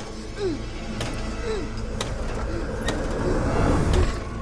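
Horror film soundtrack: a car driving, its low rumble swelling toward the end, under eerie sustained music with a few sharp clicks.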